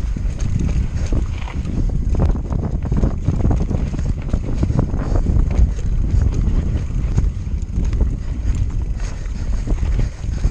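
Mountain bike descending rocky singletrack: wind buffets the camera microphone as a steady low rumble, over a rapid, irregular clatter of the tyres and bike rattling over stones.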